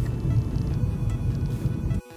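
Low road and engine rumble inside a moving car's cabin, with faint background music over it. It cuts off suddenly at the end.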